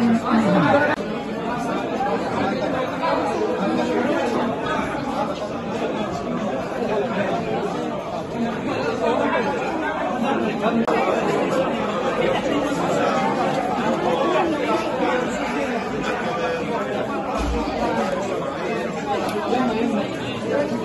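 Crowd chatter: many people talking over one another without a break, inside a crowded hall.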